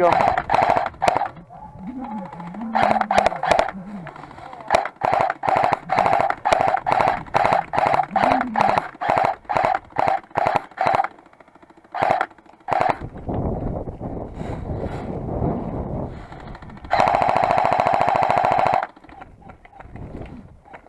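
Airsoft M249-style electric support weapon firing full-auto in short bursts, about two bursts a second through the middle, then one long burst of about two seconds near the end.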